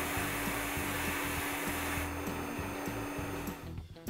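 Bead blaster in a blast cabinet hissing steadily as compressed air drives blasting beads against a rifle barrel, stripping the old finish through cut-outs in masking tape. The hiss cuts off just before the end.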